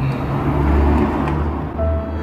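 A loud low rumble with a noisy hiss over it, swelling about a second in and easing off; near the end, music with a held tone comes in.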